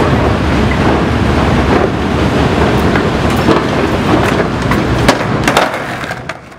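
Skateboard wheels rolling over hard ground with wind noise on the microphone, and several sharp clacks of the board from about halfway through.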